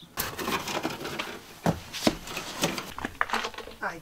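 Irregular knocks, scrapes and rustling as old heater parts and debris are pulled out of the front of a school bus, with a few sharper knocks between the scraping.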